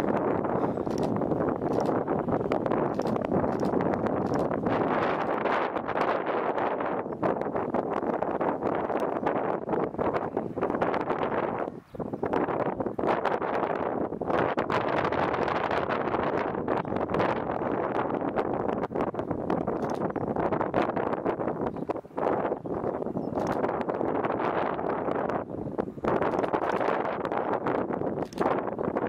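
Wind buffeting the camera microphone: a steady rushing noise that briefly drops out about twelve seconds in and again about twenty-two seconds in.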